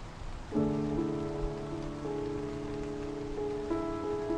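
Steady rain ambience under a soft, slow grand-piano improvisation played on a keyboard through a sampled grand piano (Spitfire LABS Autograph Grand). About half a second in a low chord is struck and held, and single notes above it change a few times.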